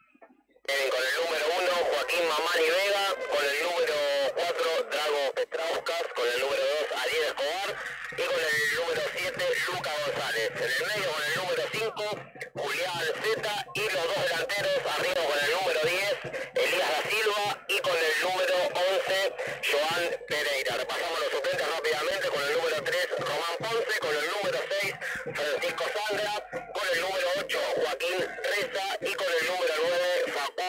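A voice talking continuously over music, with a thin, radio-like sound, reading out a football team's line-up.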